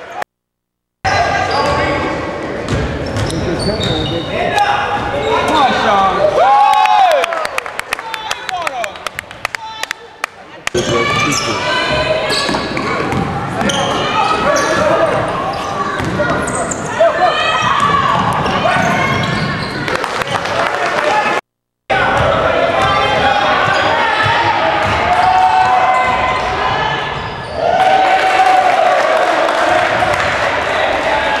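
Live sound of an indoor basketball game: a basketball dribbled on a hardwood court, short sneaker squeaks and indistinct shouts from players and the sideline, echoing in a large gym. The sound drops out briefly three times where clips are spliced together.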